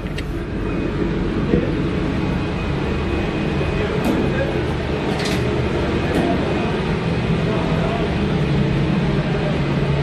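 Steady low drone of a passenger ferry's engines under a constant rush of noise on the open deck, with a metal door latch clicking open at the start.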